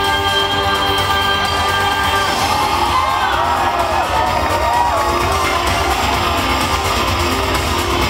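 Live concert music played loud: a female singer holds a long note over the band for about the first two seconds, then the crowd cheers and whoops over the music as it plays on.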